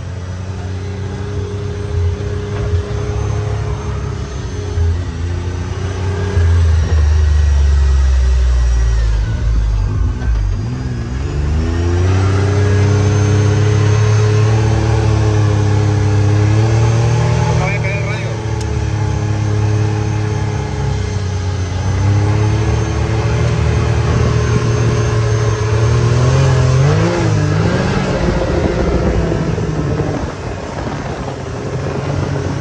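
Can-Am Maverick 1000 side-by-side's V-twin engine, heard from inside the open cab, pulling hard through sand with the revs rising and falling. The engine note dips about ten seconds in, then climbs again and holds high.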